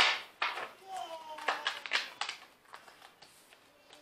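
A deck of tarot cards being handled and shuffled: a sharp slap right at the start, then a quick string of short card snaps and rustles that thin out after a couple of seconds.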